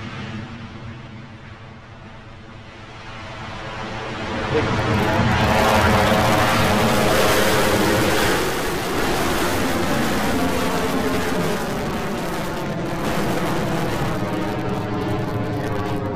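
Engine noise of an Electron rocket's nine Rutherford engines at liftoff. It builds over the first few seconds into a loud, steady rumble that holds as the rocket climbs.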